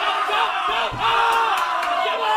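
Boxing crowd shouting and yelling encouragement, many voices overlapping, with a single thump about halfway through.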